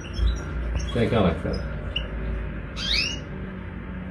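European goldfinches calling in a cage: a few short high chirps, with a louder call sweeping in pitch about three seconds in.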